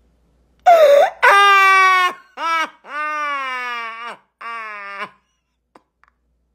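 A person laughing hard behind their hand: about five drawn-out, high-pitched laughs, each sliding down in pitch, the later ones lower.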